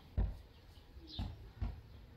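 A bird calling with short, high notes that fall in pitch, one about every second, over dull low thumps, the loudest just after the start.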